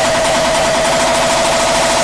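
Uptempo hardcore electronic music: a distorted kick drum repeated so fast that the hits merge into one steady, loud buzzing tone, a kick roll.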